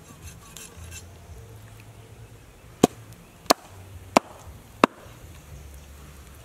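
A meat cleaver chopping through fish onto a wooden chopping board: four sharp strokes, evenly spaced about two-thirds of a second apart, starting about halfway in.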